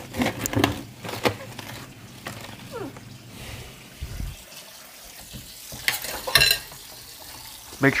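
Handling noises from a freezer clean-up: scattered knocks and rustles as frozen food and containers are moved. There is a dull thump about four seconds in and a loud, sharp crackle like a plastic bag about six seconds in, over a low steady hum.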